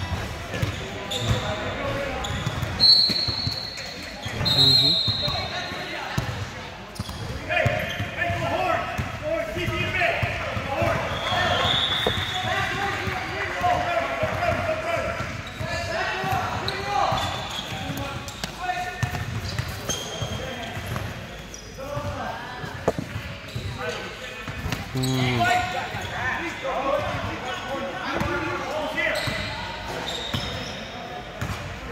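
Basketball being dribbled and bounced on a hardwood gym floor during play, under voices from players and onlookers. Two brief high-pitched tones sound about three and five seconds in.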